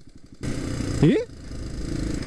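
Motorcycle running on the road, quieter for the first half-second and then steady with its engine and road noise. A short spoken 'eh?' about a second in.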